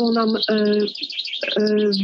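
A woman's voice drawing out long, level-pitched hesitation sounds between words, with faint high chirping behind it.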